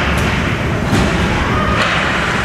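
Ice hockey play sounds: a few sharp knocks and thuds, about three in two seconds, from sticks, puck and players against the boards, over a steady low rumble.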